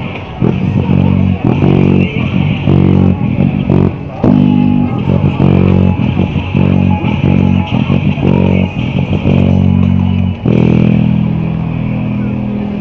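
Handmade five-string electric bass played through a small 30 W amplifier: a rock bass line of plucked notes that change pitch every second or less.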